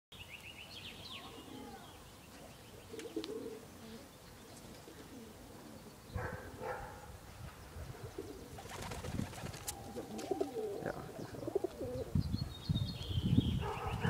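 Pigeons cooing in low warbling calls, with high twittering chirps near the start and again near the end, and louder short scuffling bursts in the second half.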